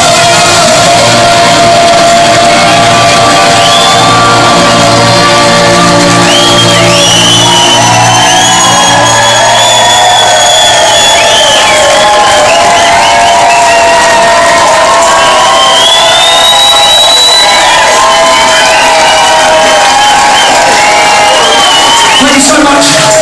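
Live band holding a long closing chord that stops about nine seconds in, with a crowd cheering and whooping over it and on after it.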